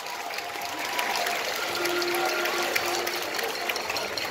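A marching band in a quiet stretch of its show, a few soft held notes sounding under a steady wash of stadium crowd noise.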